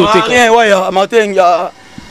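Only speech: a man talks into an interview microphone, and his voice breaks off shortly before the end.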